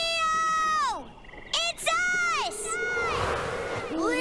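Cartoon characters' high-pitched frightened cries: one held cry that falls away after about a second, then a few shorter sharp cries, followed by a rougher, noisier sound near the end.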